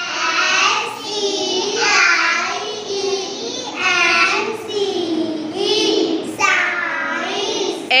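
Young girls chanting the spelling of 'science' letter by letter in unison, each letter drawn out in a sing-song way.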